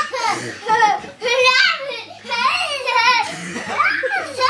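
A young child's high-pitched voice squealing and laughing, with hardly a pause.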